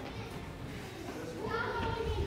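Indistinct background voices, a child's among them, with a higher child's voice coming in and growing louder about one and a half seconds in.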